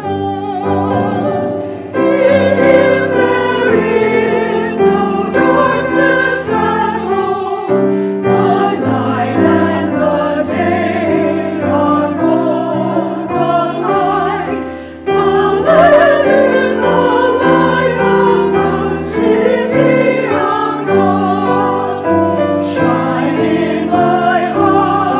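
Mixed church choir of men and women singing an anthem together with grand piano accompaniment, with a brief drop in volume about fifteen seconds in before the voices come back in strongly.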